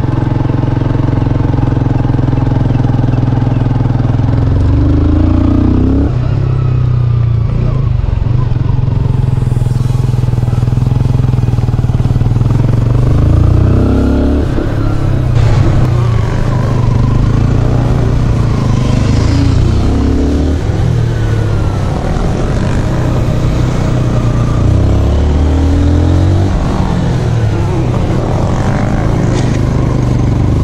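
Honda CBR125R's single-cylinder four-stroke engine being ridden slowly in low gear, revving up and easing off over and over as the bike comes out of tight turns.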